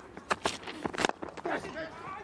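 A cricket bat striking the ball, a sharp crack about a second in among a few fainter knocks, over low stadium ambience.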